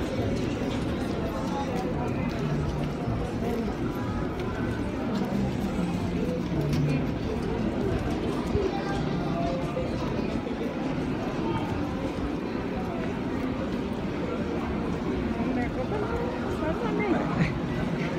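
Busy street crowd: many voices talking at once, with music playing in the background, at a steady level.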